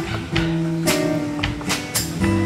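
Live band playing an instrumental passage: guitars strumming and holding notes over a drum kit, with sharp cymbal hits every half second or so.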